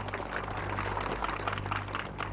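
Applause: many hands clapping irregularly, over a low steady hum.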